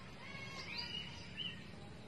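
Small birds chirping in the background, a quick run of short rising and falling chirps in the first half, over a steady low ambient hum.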